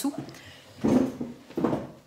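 Two short bursts of close rustling and handling noise, about a second in and again near the end.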